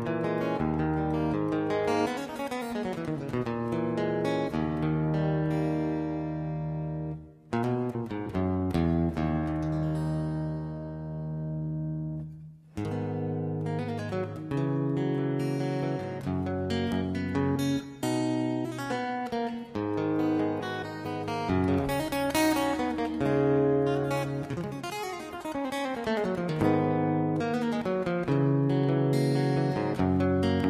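Acoustic guitar playing a melody with plucked notes and chords. About seven seconds in a chord is left ringing and fading, there is a brief break about twelve and a half seconds in, and then the playing picks up again, busier.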